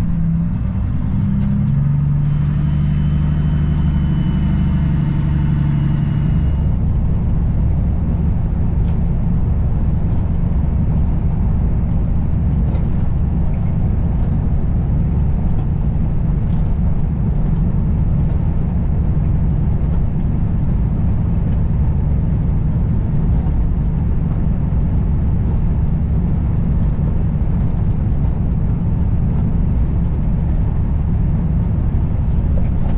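Semi truck's diesel engine running with a steady low note for the first six seconds or so, then a steady rumble of engine, tyres and wind at highway speed.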